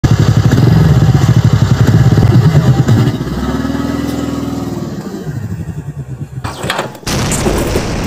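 TVS Ntorq 125 scooter's single-cylinder engine revving hard, loud and pulsing, as the rider launches into a front-wheel wheelie. About three seconds in it settles to a steady higher note, which then drops and fades as the scooter pulls away. The sound breaks off abruptly near the end.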